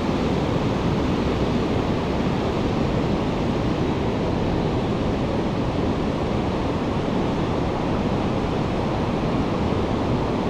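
Pacific surf breaking along a sandy beach, a steady rush of surf with no distinct break standing out.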